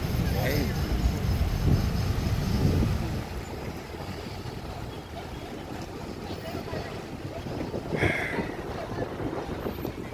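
Cars driving slowly past in a queue, with a low rumble from engines and tyres and wind on the microphone that eases after about three seconds into quieter traffic noise.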